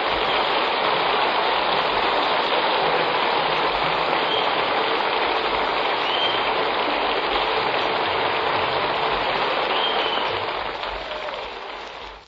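Steady hiss and crackle of a 1940s radio broadcast recording with no program audio, the surface noise of the old recording itself, fading down near the end before cutting off.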